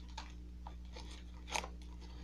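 Faint, scattered crunches and crinkles of loose pipe tobacco and a plastic bag being worked by fingers, the loudest about one and a half seconds in, over a steady low hum.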